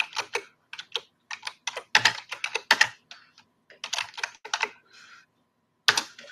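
Typing on a computer keyboard: irregular runs of sharp key clicks with short pauses between them.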